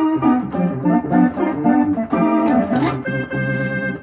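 Oberheim OB-SX polyphonic analogue synthesizer playing its organ preset: a quick run of chords played with both hands, settling on one held chord near the end.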